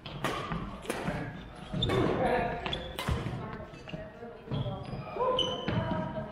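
Badminton racket strikes on a shuttlecock, several sharp cracks over a few seconds during a rally, with sneakers squeaking on the wooden gym floor and an echo from the large hall.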